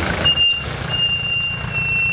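Vehicle engine running with a steady low rumble, heard from inside the vehicle, with a thin high-pitched squeal over it: a short one, then a longer one of about a second and a half that dips slightly in pitch at its end.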